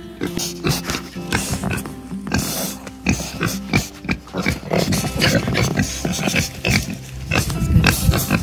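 Two pigs grunting at close range, a run of short, irregular grunts, over background music.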